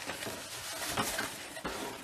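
Cardboard rustling and scraping with a few short knocks, as a cardboard shoebox is handled and slid out of a cardboard shipping box.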